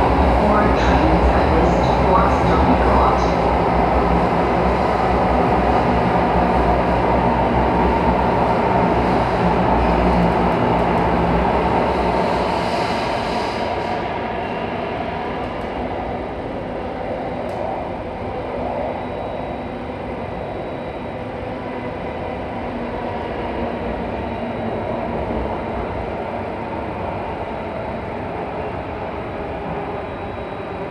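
Alstom Metropolis metro train heard from inside the carriage while running between stations in a tunnel: a steady rumble and wheel-on-rail noise with a few steady motor tones over it. About 14 seconds in, the high hiss drops away and the running noise grows gradually quieter.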